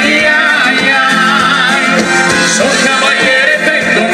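Live dance band playing amplified music, with electric guitars, horns and a singer.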